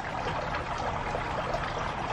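Steady running, trickling water in the background.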